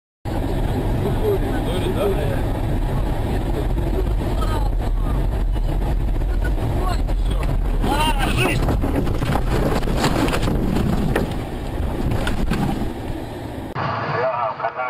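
Dashcam recording inside a car that has left the road into snow: a loud, continuous rumble with repeated knocks and jolts, and people's voices over it. The noise starts abruptly and eases off about eleven seconds in.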